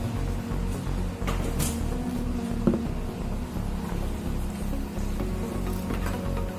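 Background music with a steady, repeating bass beat.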